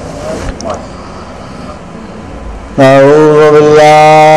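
A man's voice starts a loud chanted recitation about three seconds in, in long held notes, after a stretch of low background noise.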